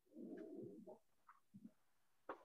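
Near silence, with one faint, low sound lasting under a second near the start.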